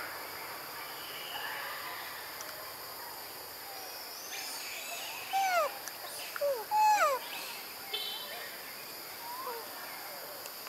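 Forest ambience with a steady high insect drone. About halfway through comes a quick series of short animal calls, each arching up and then falling in pitch; these are the loudest sounds.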